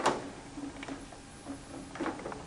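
Plastic signal-harness connector being plugged into an ECM blower motor: one sharp click at the start, then a few faint ticks of handling.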